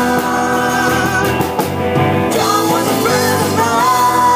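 Live rock band playing a song: electric guitars, drum kit and keyboard at a steady loud level, with singing.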